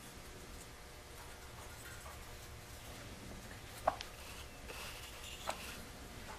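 Carving knife with a modified Mora blade whittling basswood: soft, quiet slicing cuts with two sharp clicks of the blade through the wood, the louder about four seconds in and another about a second and a half later, over a low steady hum.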